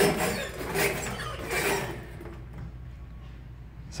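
Stainless steel wire brush scraped hard back and forth across clear bra (paint protection film) on a painted demo panel, in a scratch-resistance test. It makes about three scraping strokes in the first two seconds, then stops.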